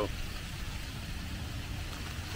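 Steady low rumble of outdoor background noise with an engine-like hum, typical of traffic.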